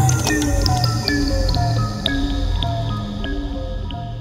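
Psychill/goa-trance electronic music in a breakdown without the kick drum: a sequence of short synth notes stepping in pitch over a bass line, thinning out near the end.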